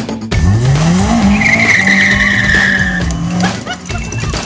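Open Seven-style sports car pulling away hard: the engine revs climb, then the tyres squeal in a long wheelspin that fades out near the end.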